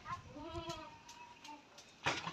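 A young farm animal bleating: one faint, drawn-out call lasting about a second and a half, its pitch arching up and then down.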